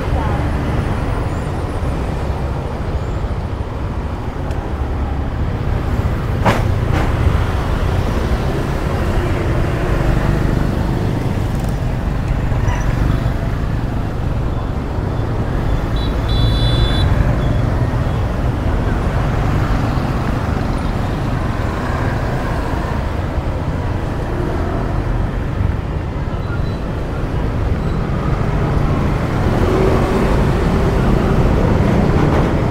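Street traffic of motorbikes and scooters heard from among the traffic while moving along the road, with a steady low rumble. There is a sharp click about six seconds in and a short high-pitched beeping just after halfway.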